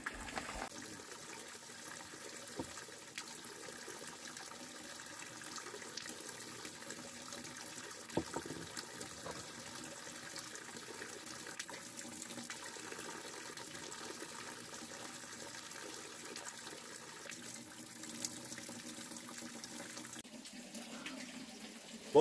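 Faint, steady rush of running water, with a few light clicks over it.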